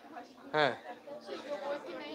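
Indistinct voices and chatter, with one short louder vocal sound with a falling pitch about half a second in.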